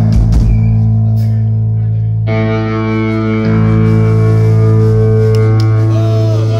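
Electric guitars with effects holding a loud, sustained droning chord, with falling pitch swoops at the start; a new, fuller chord comes in about two seconds in and is held.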